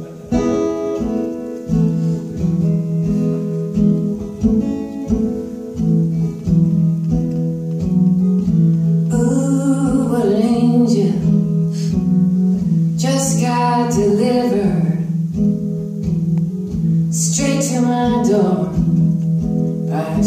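Live folk song: guitar playing an intro with sustained notes, then a woman's singing voice coming in about halfway through, in phrases over the guitar.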